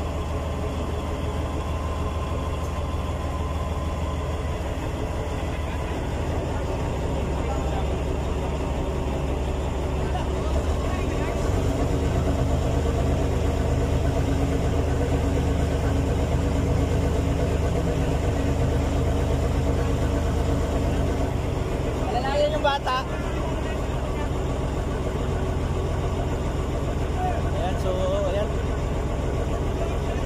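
A large engine idling with a steady low drone that gets a little louder about a third of the way in, with brief indistinct voices in the second half.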